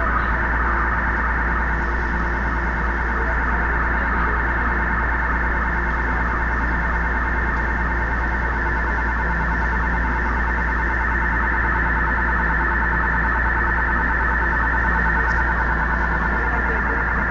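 Subway car telemetry data leaking onto a TTC subway car's passenger PA speakers: a continuous electronic chatter of rapidly pulsing high tones over a low steady hum. The noise is a wiring or routing fault that sends the car's data line into the passenger audio line.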